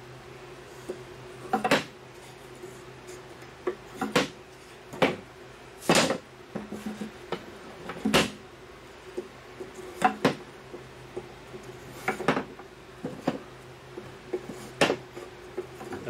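Wooden beehive frame end bars clacking against each other and against the wooden frame jig as they are set into it one at a time: about ten sharp, irregular wooden knocks over a steady low hum.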